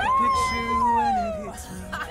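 One long howl, rising at the start, held, then falling away, over background music.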